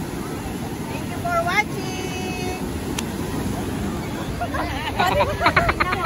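Steady low rumble of wind and surf on an ocean beach, with people's voices over it: a few brief calls early on, and louder, fast-pulsing voices near the end.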